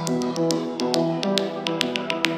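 Dark progressive psytrance: a sequenced synth line of short, stepping notes under crisp, high percussive ticks, with no deep bass in this stretch.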